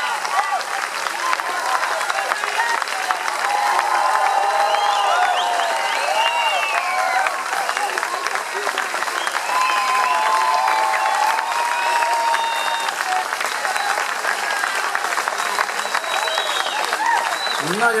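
Audience applauding steadily after a concert, with voices calling out over the clapping.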